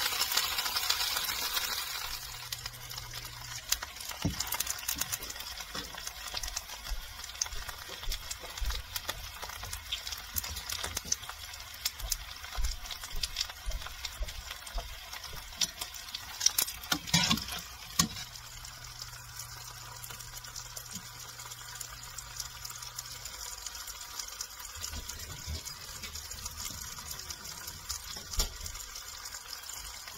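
Seitan roast and apple slices sizzling in oil in a frying pan: a steady hiss with scattered crackles, louder for the first couple of seconds. Metal tongs clack against the pan about 17 seconds in.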